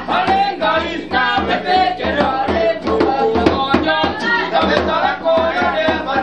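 A small group of voices singing a song together to acoustic guitar, with a steady beat struck about twice a second.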